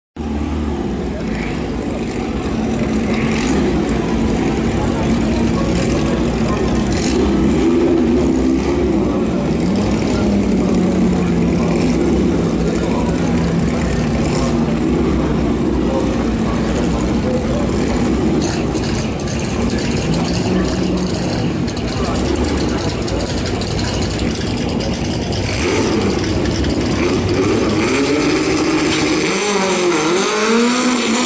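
Drag-racing engines of a VW Beetle and a Mk1 VW Golf idling and revving on the start line, pitch swinging up and down. Near the end both cars launch, engine pitch climbing sharply.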